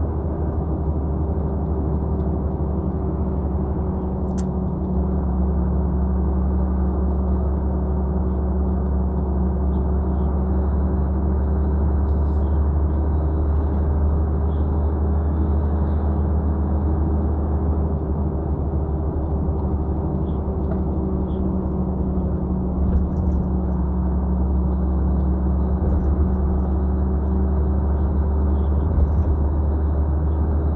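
Heavy truck's diesel engine and road noise heard from inside the cab while cruising at a steady speed: a constant low drone with a steady hum over it.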